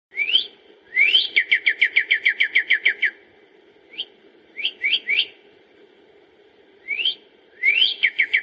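A songbird singing clear whistled phrases. A rising whistle leads into a rapid run of about a dozen short falling notes, followed by a few single rising notes, and the phrase begins again near the end.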